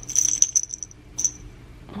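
Small jingle-ball cat toy being shaken, its bell ringing and rattling for about a second, then once more briefly.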